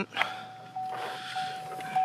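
A pickup truck's electronic warning chime, a single steady tone starting just after a short click and holding with brief breaks. With the driver's door standing open, it is the door-open warning.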